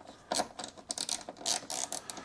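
Irregular metallic clicking, about eight clicks, from a hand ratchet working the car door striker's bolts during fine adjustment of the striker position.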